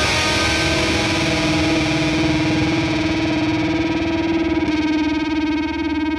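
Distorted electric guitar, a Squier Jazzmaster on its Fender CuNiFe Wide Range bridge humbucker, holding one sustained note that wavers as it rings on. The note's upper treble fades away near the end.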